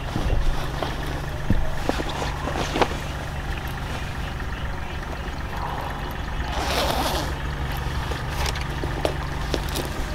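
Clothing rustling as a jacket is pulled on, with a zip drawn up about six and a half seconds in, over a steady low rumble.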